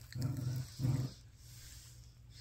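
A woman's three short, low groaning cries in the first second, a wordless reaction to Kool-Aid Pop Rocks popping in her mouth.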